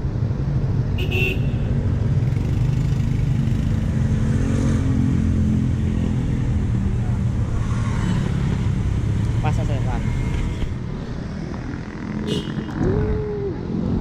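Street traffic passing close by: motorcycle and car engines running, heaviest over the first ten seconds, then easing off.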